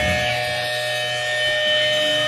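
Electric guitar amplifier feedback: a few steady, high ringing tones held on after the band stops playing.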